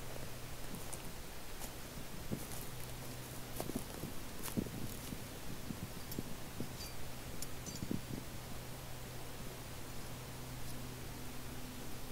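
Faint rustling of ground litter and a few light clicks of metal climbing hardware as a double pulley and its coupling are handled on the ground, over a steady low hum.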